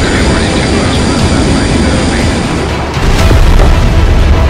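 Cinematic trailer music over a low aircraft rumble sound effect, with a sudden loud boom about three seconds in.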